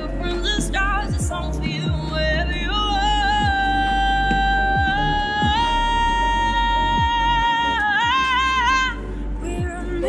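A female singer belting one long held note that steps up to a higher held note partway through and breaks into vibrato near the end, over a low accompaniment.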